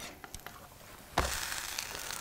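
Grilled cheese sandwich frying on an electric griddle: a few light utensil clicks, then a steady sizzle that comes in suddenly about halfway through as the sandwich is held down on the hot plate.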